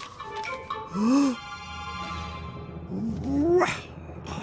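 Cartoon background music under two short wordless vocal murmurs from a man: a rise-and-fall about a second in and a longer rising one near the end.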